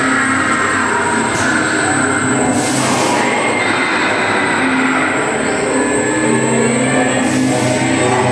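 Dark-ride soundtrack music playing loudly over the steady rumble of the ride car moving along its track, with two short hissing bursts, about three seconds in and near the end.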